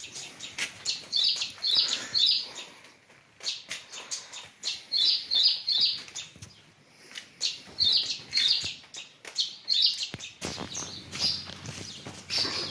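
Small birds chirping: bright, high chirps in quick runs of about three, repeated every few seconds, with scattered light taps and knocks between them.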